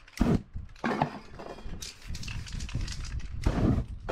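Spray-paint work with fire on a canvas: several short hissing, rumbling whooshes, the loudest near the end, as the fresh orange paint is set alight.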